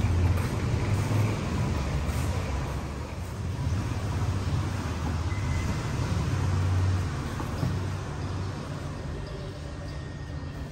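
A low, uneven rumble that eases off somewhat over the last few seconds.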